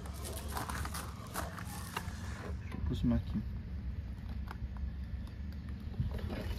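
Faint scattered clicks and scrapes from an old iron wire-loop tool for bale ties, its lever worked by hand on a wooden plank, over a low steady rumble.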